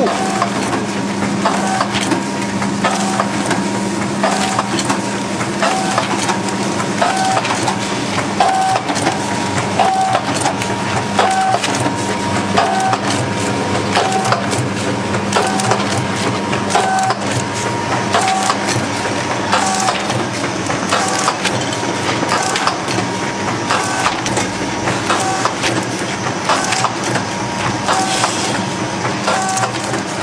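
DXDF500 powder sachet packaging machine running: continuous mechanical clatter and clicking over a steady hum, with a short whine repeating about every second and a half as it cycles through sachets.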